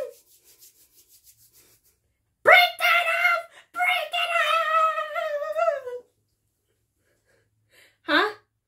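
A high-pitched voice yelling in two long, drawn-out cries with a short break between them, starting about two and a half seconds in and stopping about six seconds in.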